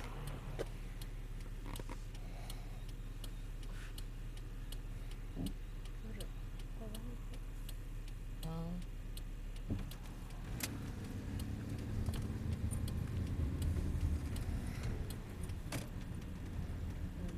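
Car engine running steadily as heard inside the cabin. About ten seconds in, the engine note and road noise rise as the car pulls away and gets under way.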